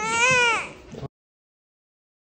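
One-month-old baby crying in pain after a vaccination shot: a single loud wail that rises and falls in pitch and lasts under a second. It trails off, then cuts off abruptly about a second in.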